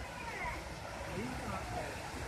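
Steady rush of water from a small waterfall on a creek, with faint voices in the background.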